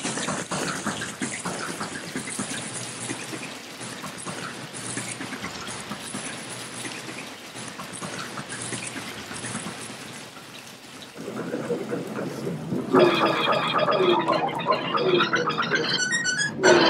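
Water running from the tap into a bubble bath, a splashy hiss with many small ticks. About thirteen seconds in, a voice comes in over it with pitched mouth-music notes in short falling slides.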